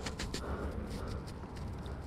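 Low rumble with faint, irregular crackles: clothing fabric rubbing against the body-mounted camera's microphone.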